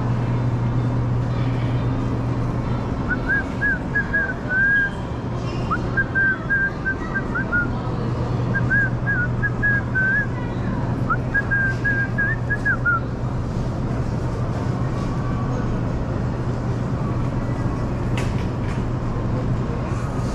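A person whistling a short tune in four brief phrases of quick notes, over a steady low rumble of a shopping cart rolling across the store floor.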